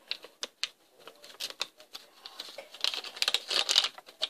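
Zomlings blind-bag packet of thin foil and plastic being torn and crinkled open by hand: a string of short crackles, sparse at first and coming thick and fast for the last couple of seconds.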